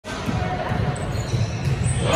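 Basketball game in a large gym: the ball being dribbled on the hardwood court in irregular low thuds, with spectators talking.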